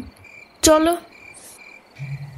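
Crickets chirping steadily in a bed of night ambience, a high, pulsing trill.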